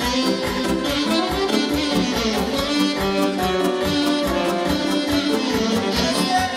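Romanian hora dance music from a live party band, with a steady fast beat and several melody instruments playing together.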